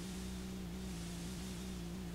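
Static from a blank stretch of VHS videotape: a steady hiss with a low, steady electrical hum underneath.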